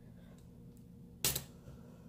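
Washi tape torn by hand: one short, crisp rip about a second and a quarter in.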